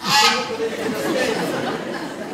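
Actors' spoken stage dialogue in a hall, opening with a loud exclamation just after the start and followed by continued talk.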